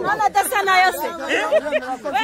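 Speech: people talking, with more than one voice at once.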